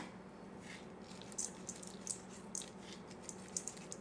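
Faint, short rustles, about half a dozen of them, as coarse salt is pinched and sprinkled by hand over a bowl of salsa, over a faint steady hum.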